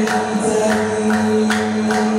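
Hamadsha brotherhood men chanting a Sufi devotional hymn together, holding long notes, with sharp beats keeping time about two to three times a second.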